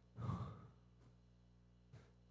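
A man's short breath into a handheld microphone a moment in, then quiet room tone with a faint steady low hum.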